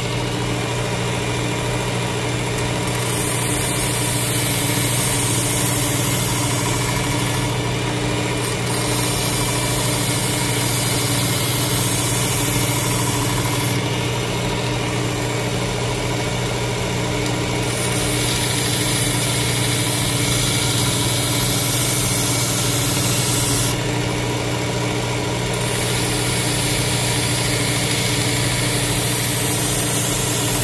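Work Sharp Ken Onion sharpener with its blade grinding attachment running steadily at slow speed, a constant motor hum. A straight razor's edge is held lightly against the moving belt in four passes of several seconds each, each adding a hissing grind over the hum.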